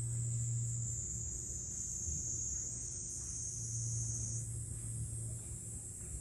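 A steady, high-pitched insect chorus, shifting slightly lower in pitch partway through, over a faint low hum.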